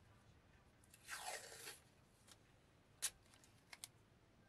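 Masking tape pulled off its roll in one short rip about a second in, followed by a sharp click and two faint ticks near the end.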